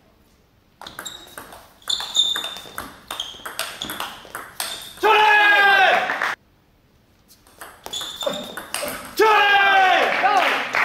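Table tennis rally: the celluloid ball clicks off the bats and pings on the table in quick succession, ending in a loud shout from a player. After a brief silence a second rally of clicks and pings follows, again ending in a loud shout.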